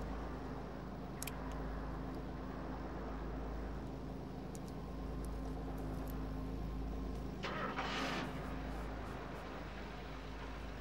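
A sharp metallic click about a second in as a small pocket blade is handled, then a short scraping, rattling burst near the end as the car's door is worked open, over a steady low hum.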